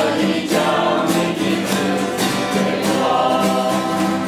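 A small mixed group of men, women and children singing a Chinese worship song together.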